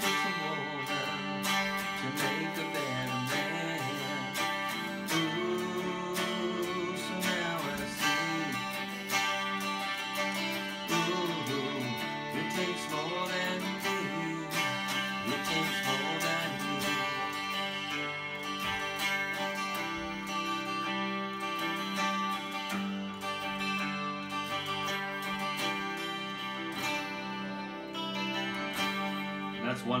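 A white 2001 Dean Flying V electric guitar with Seymour Duncan pickups, strummed chords and picked notes playing a song passage, with steady rhythmic strumming throughout.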